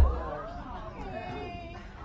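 Indistinct speech and chatter that the recogniser did not catch, with a short low thump on the microphone at the very start.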